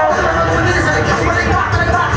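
A rapper's voice through a PA system over a loud hip-hop backing beat, performed live in a room.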